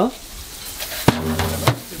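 Garden hose spray nozzle spraying water onto a car, a steady hiss, with two sharp clicks and a low hum coming in about a second in.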